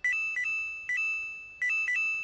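A short electronic jingle: high, bell-like synth notes hopping between a few pitches, the same little phrase played twice, each time ending on a held note that fades away.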